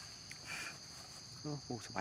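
Steady, shrill chorus of forest insects, holding two constant high pitches. There is a brief rustle about half a second in, and a man's voice comes in near the end.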